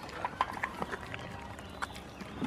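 Goat chewing a banana taken from a hand, close up: a run of irregular short clicks and smacks from its mouth.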